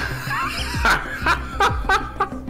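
Uneasy laughter in several short bursts, the sign of a nervous, uncomfortable speaker, over background music with low bass notes.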